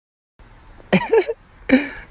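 Silence at first, then faint background and two short vocal bursts from a person, cough-like, about a second and a second and a half in.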